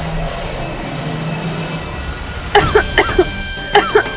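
A woman coughing in a rapid fit, several short coughs a second, starting about two and a half seconds in, as she breathes in thick smoke. Background music with held tones runs under it.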